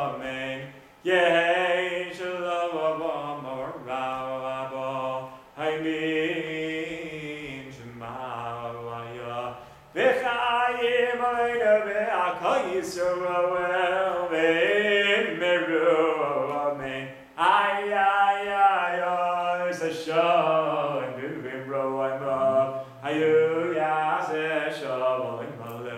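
A man singing a Chabad niggun solo and unaccompanied, in phrases several seconds long with short breaks for breath between them.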